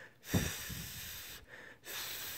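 A man blowing a breathy hiss of air through tongue and teeth, an unvoiced TH sound held as the tongue position for whistling without fingers, with no whistle tone yet. It comes in two blows, with a short break about one and a half seconds in.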